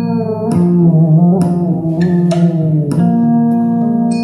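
Instrumental music with plucked guitar over a bass line, played back through a pair of full-range 30 cm karaoke loudspeakers driven by a power amplifier. A new note is plucked about every half second to second.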